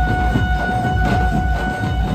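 Chhattisgarhi dhumal band playing: dense, loud drumming with one long high note held over it.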